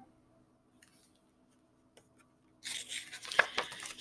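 Near silence, then about two and a half seconds in, the paper pages of a picture book rustle as the book is handled and a page is turned, with a few small clicks.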